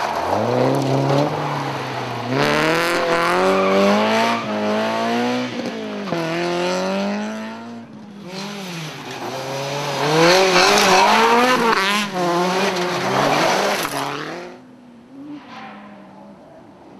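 Rally car engines at full throttle on a gravel special stage, two passes one after the other. Each engine note climbs and drops repeatedly as the car goes by: the first for about eight seconds, the second from there until it dies away about a second and a half before the end.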